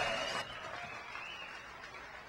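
Faint background noise of an audience in a large hall, dying down in the first half second and then staying low and even.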